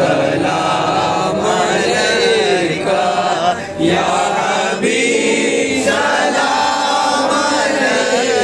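A group of men singing a devotional Salam together in unison, a chanted Urdu salutation to the Prophet with long, wavering held notes.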